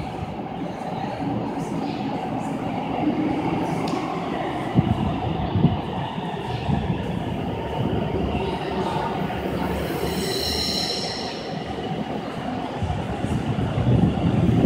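AnsaldoBreda P2550 light-rail train approaching through a tunnel: a steady rumble, with two sharp knocks about five seconds in and a brief high wheel squeal near ten seconds.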